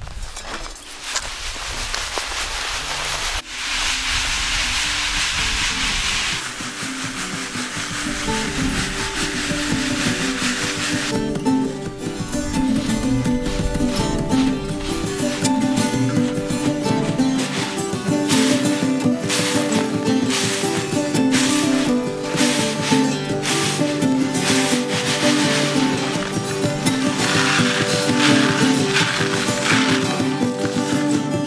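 Dry beans and chaff rustling with a steady hiss as they are shaken and tossed in a woven bamboo winnowing sieve, for about the first ten seconds. Instrumental music fades in underneath and from about eleven seconds in takes over on its own.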